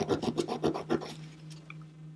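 A 180-grit nail file rasping across a dip-powder fingernail in quick back-and-forth strokes, about eight a second, dying away after about a second.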